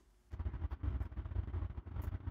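Low, uneven rumble that starts after a brief moment of dead silence.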